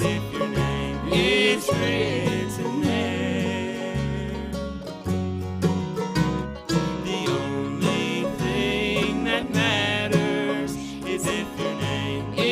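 A live bluegrass band playing: electric bass holding low notes under mandolin, fiddle, acoustic guitar and banjo, with a wavering melody line on top.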